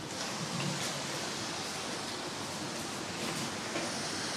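Steady wind noise, an even hiss with no distinct events.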